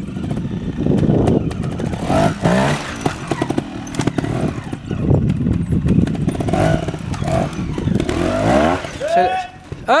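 Trials motorcycle engine blipped and revved in short bursts, rising and falling, as it climbs a rocky section, with scattered knocks.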